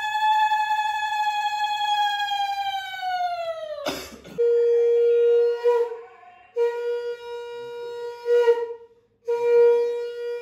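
Conch shell (shankha) blown for the Bhai Phota ritual. One long high note is held for about four seconds and sags in pitch as the breath runs out; after a brief knock come three shorter, lower, steady blasts.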